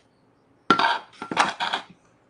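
Small plastic watercolour mixing palette clattering as it is lifted and set down: a short run of knocks and rattles starting a little before the middle and lasting about a second.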